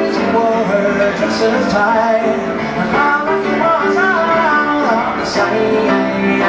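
Grand piano played live, with a man singing over it.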